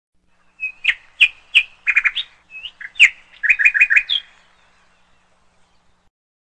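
Bird chirping: a quick run of short, high chirps, some rising at the end, lasting about three and a half seconds and then stopping.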